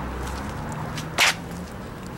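Low street-traffic rumble with faint footsteps, broken just past a second in by one short, sharp hissing burst that is the loudest sound here.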